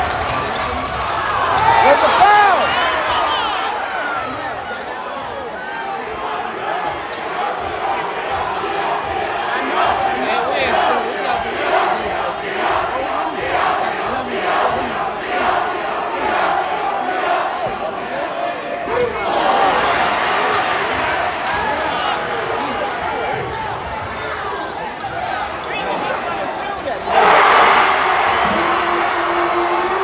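Basketball being dribbled on a gym's hardwood floor under the noise of a packed crowd of spectators talking and shouting, with a run of steady, even bounces midway. Crowd noise rises suddenly near the end.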